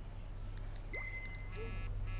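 A smartphone text-message alert: a short, high electronic tone about a second in, over a steady low hum.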